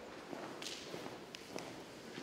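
Faint hum of a large gallery room with a few sharp clicks and taps, about three in the second half, typical of hard-soled footsteps on a wooden floor.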